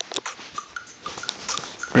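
Irregular clicks and rustling with a few short, faint squeaks, typical of a phone being handled close to its microphone.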